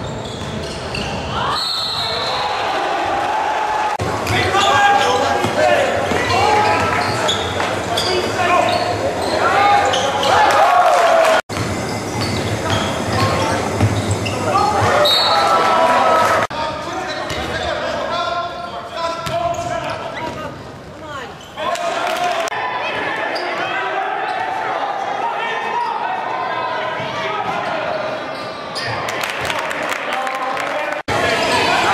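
Live game sound from a college basketball game in a gymnasium, with a ball bouncing on the hardwood court and the voices of the crowd, echoing in the large hall. The sound breaks off abruptly twice where game clips are spliced together.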